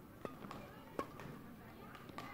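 Badminton rackets striking a shuttlecock during a fast doubles rally: sharp hits about a quarter second in and about a second in, the second the loudest, with a fainter hit between.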